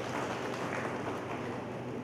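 Audience applauding, a steady patter of many hands, over a steady low hum.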